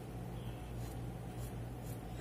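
Scissors trimming thin knit fabric: a few faint snips over a steady low hum.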